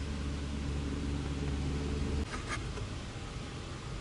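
Toyota AE86 Sprinter Trueno's engine running at low, steady revs as the car rolls slowly, a low even drone. It cuts off abruptly about two seconds in, leaving quieter distant engine and road noise with a few light clicks.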